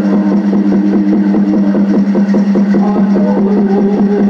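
Men singing a Native American Church peyote song over a fast, even beat of a water drum and gourd rattle. The drum's ringing tone holds steady under the voices.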